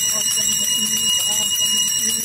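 Small brass puja hand bell rung without pause during a river aarti, a steady high ringing, with people's voices underneath.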